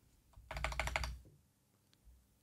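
A short burst of rapid typing on a computer keyboard, about a second of quick keystrokes that then stops.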